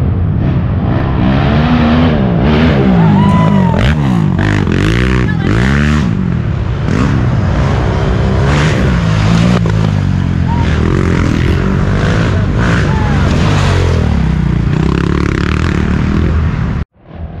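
Racing ATV engines revving hard, more than one at once, their pitch rising and falling again and again.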